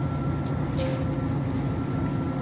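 Electric food steamer running, its water boiling under the glass lid in a steady rumble, with a thin steady high whine and a few faint ticks.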